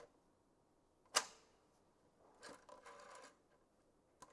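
Desk telephone: a single sharp click about a second in as the cradle is pressed to end the call, then a run of quick clicks from about two and a half seconds in as a new number is dialled.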